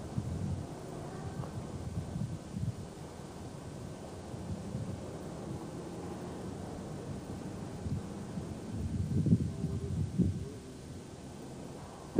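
Low outdoor rumble with wind buffeting the microphone and faint handling noises, growing louder for a couple of seconds near the end.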